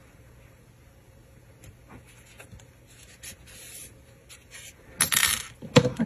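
Quiet rustling and light ticks of yarn being drawn with a sewing needle through the back of crocheted stitches, with a louder scratchy rustle about five seconds in.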